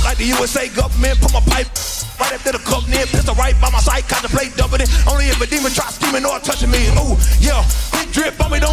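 Live hip hop: a man rapping into a microphone over a live band, with heavy sustained bass notes, drums and electric guitar.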